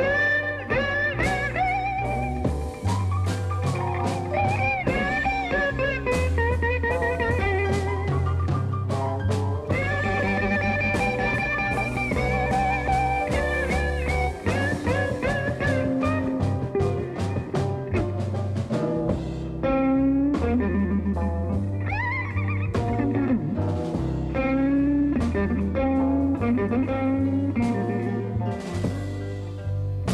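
Electric blues band playing an instrumental break between sung verses, with harmonica carrying wavering, held notes over electric guitar, bass and drums.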